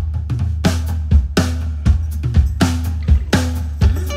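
Opening of a live rock song: a drum kit starts suddenly on a steady beat of kick, snare and cymbal, with a low bass guitar line held underneath.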